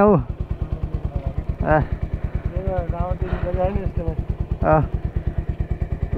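Motorcycle engine idling with a steady, even low pulse.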